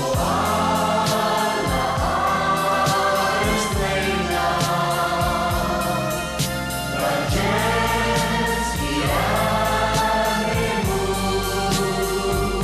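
A Maltese pop song sung by a group of voices in harmony over a band with bass and a steady drum beat. Long held sung phrases start about every two seconds.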